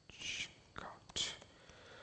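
A man whispering under his breath, in short hissy bursts, with a few faint clicks from a laptop keyboard as he types.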